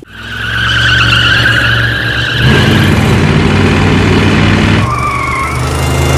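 Car engine revving hard as the car pulls away, with tyres squealing for about two seconds. The engine swells about two and a half seconds in, and a second, shorter tyre squeal comes about five seconds in.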